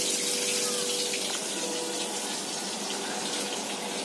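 Oil sizzling in a wok on a gas burner, a steady hiss that slowly fades.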